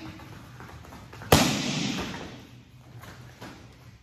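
Two martial-arts kick paddles clapped together once about a second in: a sharp, loud slap that echoes briefly in the room, the signal for the class to drop to the floor.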